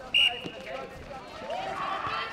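Netball players calling out during play. Just after the start there is one brief, loud, high-pitched squeak.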